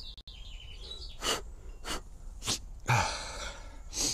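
A man sniffing and breathing hard through his nose several times in short bursts, then a longer, louder breath or cough about three seconds in.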